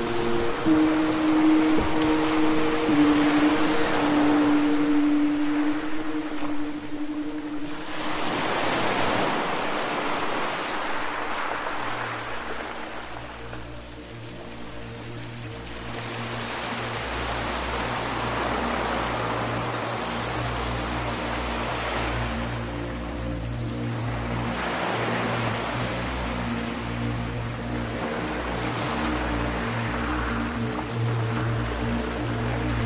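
Ambient music of slow, sustained tones layered over the sound of ocean waves, the surf swelling and washing back every several seconds. About twelve seconds in, a low, steady drone joins underneath.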